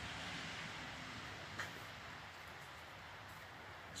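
The big flywheel of an antique hand-cranked post drill spinning freely: a faint, steady whir that slowly fades as the wheel coasts down, with one small click about a second and a half in.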